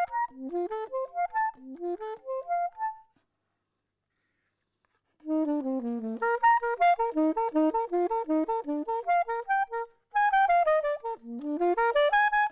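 Solo soprano saxophone playing fast rising arpeggio runs of short notes, breaking off for about two seconds a few seconds in, then resuming with rapid runs and another quick pause near the end.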